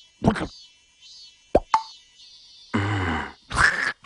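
Cartoon sound effects: a short pop and a quick plop about a second and a half in. Near the end come a larva character's gibberish vocal sounds, falling in pitch.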